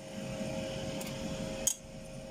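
Hot oil sizzling softly in a stainless frying pan while metal tongs lift out fried sambusas, with two light metallic clicks of the tongs. A steady low hum runs underneath.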